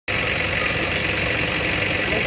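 A vehicle engine idling with a steady low rumble, under an even high-pitched hiss.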